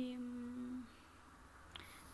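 A woman's drawn-out hesitation hum, one steady note held for about a second before it breaks off.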